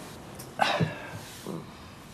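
A loud slurp from a mug about half a second in, followed by a soft low knock and a fainter one.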